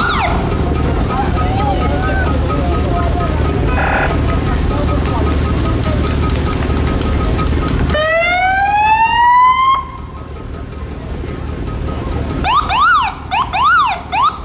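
Fire engines' sirens sounding. About eight seconds in, a siren winds up in one long rising wail, the loudest sound. Near the end come short, fast up-and-down yelps, and for the first half a steady low rumble runs underneath.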